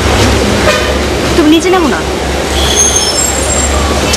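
Street background: a steady traffic rumble with brief distant voices about a second and a half in, and short high-pitched toots a little later.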